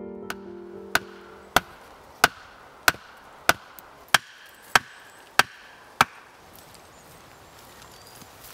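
An axe chopping into wood: about nine evenly spaced strokes, a little more than one and a half a second, stopping about six seconds in. Piano music fades out at the start.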